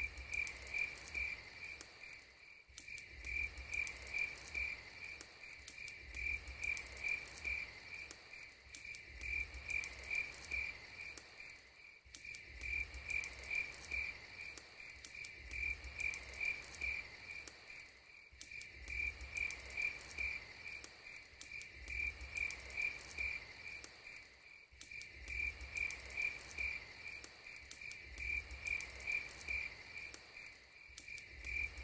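Crickets chirping in a steady, even pulse, about three chirps a second on one high pitch, over a faint low hum that swells and fades every couple of seconds.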